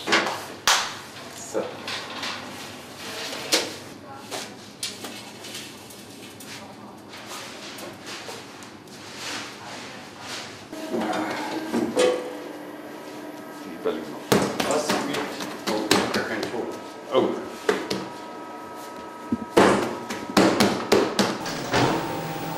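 Knocks and clatter of a dough plate being handled and loaded into a bakery dough divider-rounder. About halfway through, the machine starts with a steady hum, with more knocking over it.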